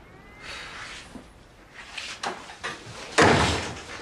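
A door shut hard: one loud slam about three seconds in, after some quiet rustling and shuffling.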